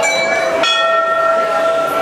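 Temple bells rung by hand: one strike at the start and another about two-thirds of a second later, each ringing on with several clear, steady tones.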